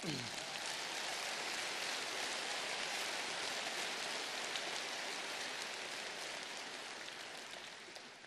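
Audience applauding, a dense even clatter of clapping that tails off near the end, with a brief falling voice-like call from the crowd at the very start.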